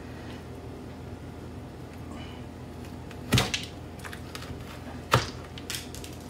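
Spoon scooping seeds out of a halved butternut squash: a low steady hum with two sharp knocks of the spoon, about three and a half and five seconds in, and a few fainter ticks.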